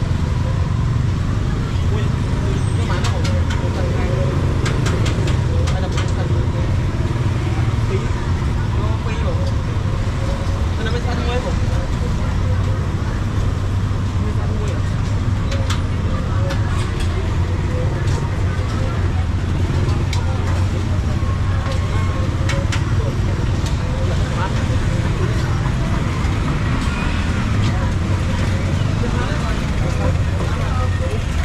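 Busy street-market ambience: a steady low rumble of road traffic under indistinct background chatter, with scattered sharp clicks.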